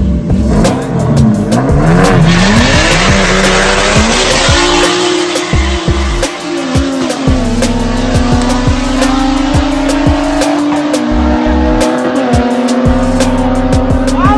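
Two naturally aspirated street-race cars, a 3.5 V6 and a 3.8, launching from a standing start. The engines rev and climb in pitch as the cars accelerate away, with tyres squealing at the launch. A music track with a beat runs underneath.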